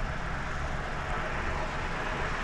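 Steady outdoor background noise: a low rumble with a faint hiss, even throughout, with no distinct events.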